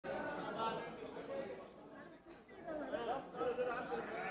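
Indistinct chatter of many members of parliament talking at once across the chamber, with no single voice standing out.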